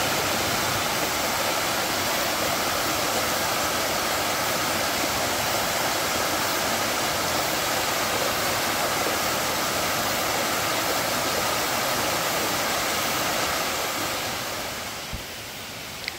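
Small mountain stream cascading down a rocky waterfall: a steady rush of water that fades down near the end.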